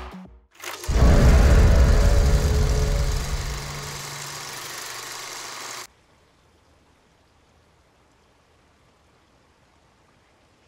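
Closing sting of a TV show's end credits: a loud deep boom with a rushing noise about a second in, fading over a few seconds into a low steady hum that cuts off suddenly about six seconds in, then near silence.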